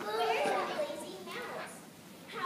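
A group of children's voices calling out together, loudest at the start and dying away.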